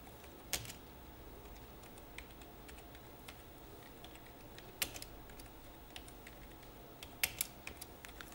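Typing on a computer keyboard: faint, irregular key clicks as a short phrase is entered, with a few louder strikes about half a second in, near the middle and in a quick cluster near the end.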